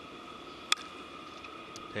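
A single sharp crack of a baseball bat meeting the pitch, about three-quarters of a second in, sending a fly ball to center field, over a faint steady ballpark background.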